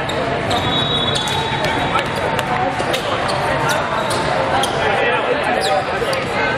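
Busy volleyball tournament hall: a babble of many voices over volleyballs bouncing and being struck on hard sport courts. A referee's whistle is held for over a second near the start.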